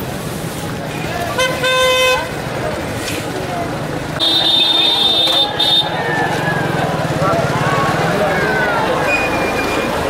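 Crowd of people chattering, with vehicle horns honking twice over it: a short horn blast about a second and a half in, then a longer, higher-pitched horn from about four to six seconds in.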